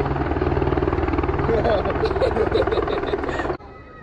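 Helicopter running nearby: a loud, steady low rotor beat that cuts off abruptly near the end.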